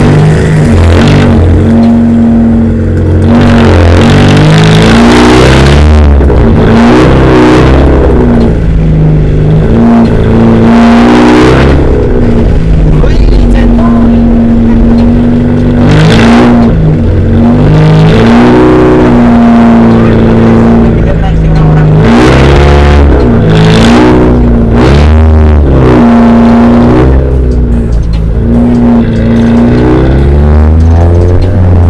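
Car engine revving and running under way, its exhaust piped out through a corrugated water hose. It is loud throughout, with the revs rising and falling several times.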